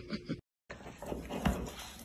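Sound drops out briefly at a cut, then comes a run of soft, irregular clicks and thumps close to the microphone as a golden retriever nuzzles a kitten with its muzzle.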